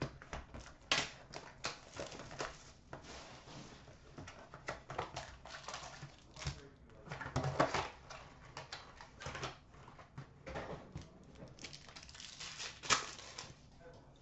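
Hockey card box and pack being opened by hand: irregular rustles, crinkles and light taps of cardboard and wrapper, in clusters with short pauses.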